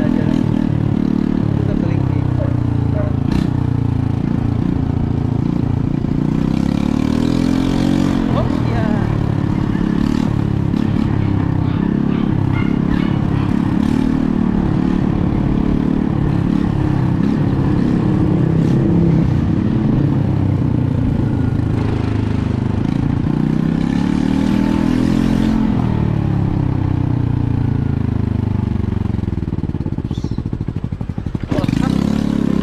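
Motorcycle engine running while riding, its pitch rising and falling as the rider speeds up and eases off, with the clearest swells about eight seconds in and again about 25 seconds in.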